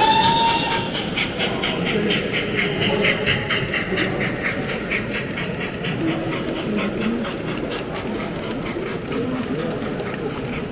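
OO gauge model steam locomotive with onboard sound giving a short whistle, then a steady chuffing rhythm of about four beats a second as it hauls a long train of wagons past, fading near the end. A murmur of background crowd noise runs underneath.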